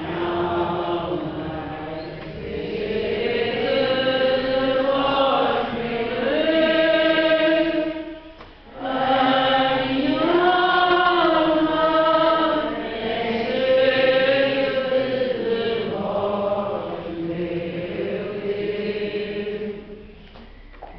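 Slow liturgical chant sung by church voices, phrase after phrase, with a brief break for breath about eight and a half seconds in: the sung responsorial psalm of the Mass.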